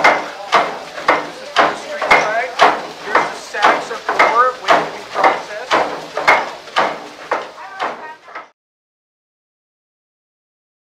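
Stamp mill running, its heavy stamps dropping in a steady rhythm of about two blows a second with a clanking ring after each. The sound cuts off suddenly about eight and a half seconds in.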